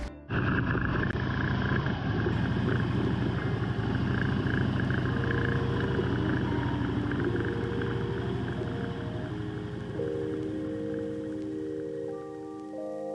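Motorcycle engine running at low road speed, with wind noise on the microphone. Background music with held notes comes in about halfway and is clearer near the end.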